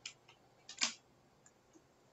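A few short, sharp clicks and taps at irregular intervals, the loudest a little under a second in.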